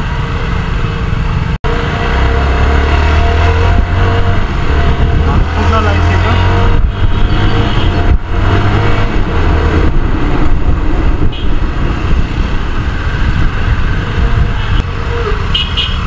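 CFMoto 250NK single-cylinder engine running as the motorcycle rides through city traffic, under a heavy low rumble. The sound cuts out for an instant about a second and a half in.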